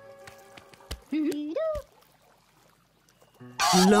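A puppet character's wordless gliding "ooh" call, rising in pitch, about a second in, with a soft knock just before and after. Near the end, bright music starts loudly together with high squeaky cheering voices.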